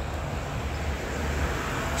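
Steady low rumble of outdoor street background noise, with no distinct event standing out.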